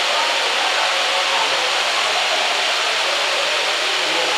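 Steady, even rushing noise at a constant level, with no rhythm or pitch changes.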